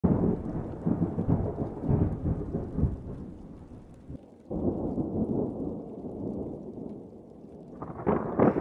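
Thunder sound effect: two rumbling peals. The first fades away about halfway through, and the second breaks in suddenly just after and dies down toward the end.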